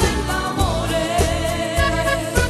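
Live Italian liscio dance-band music: a woman singing, holding one long wavering note through most of it, over accordion and a steady low beat.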